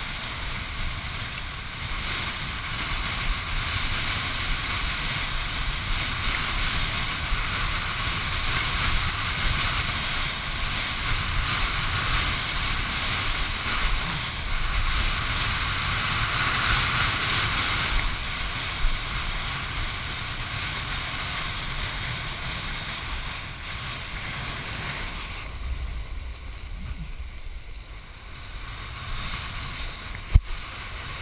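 Wind rushing over a head-mounted GoPro in its waterproof housing, with the hiss of a kiteboard skimming choppy sea water. The rushing is strongest through the first half, eases near the end, and one sharp knock comes about two-thirds of the way in.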